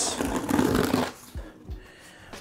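Scissor blade slitting the packing tape along a cardboard box seam: a scratchy tearing noise for about a second, then fading, with a couple of soft knocks.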